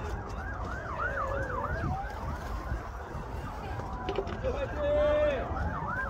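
A siren sounding over steady background noise: a fast yelping pattern about three times a second for the first two seconds, with a slower wail rising and falling in pitch through the rest.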